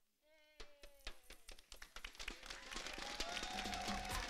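Studio audience clapping and beating inflatable thunder sticks together, a dense rapid clatter that starts from silence about half a second in and grows steadily louder.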